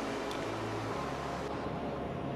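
Steady rush of a shallow mountain stream flowing over rocks, an even hiss with no breaks.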